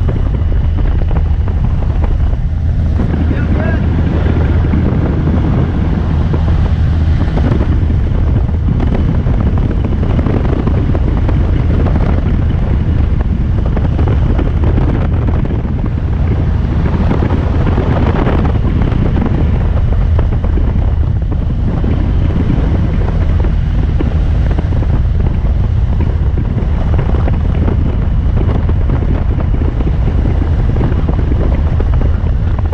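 Steady drone of a light airplane's engine and propeller heard inside the cabin, a constant low hum under a wash of wind noise as the plane climbs.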